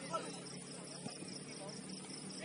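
Crickets chirping in a steady, even high-pitched pulse, with faint distant voices calling.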